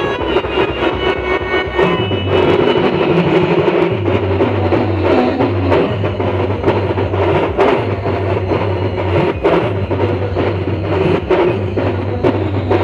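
Instrumental Adivasi band music from a Roland XPS-30 keyboard through loudspeakers: a repeating low bass line under sustained keyboard tones, driven by a fast, busy percussion beat.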